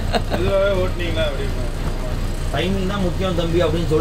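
Steady low drone of a coach's diesel engine heard from inside the driver's cab, under people talking.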